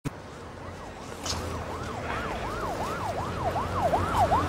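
Ambulance siren in a fast rising-and-falling yelp, about three sweeps a second, growing louder as it approaches.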